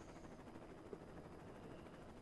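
Near silence: faint steady room tone and hiss in a pause of the voiceover.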